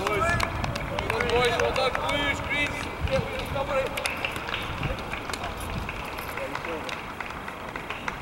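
Players' voices shouting and calling across an open-air football pitch, mostly in the first three seconds, then fading to steady outdoor background noise with a few scattered sharp knocks.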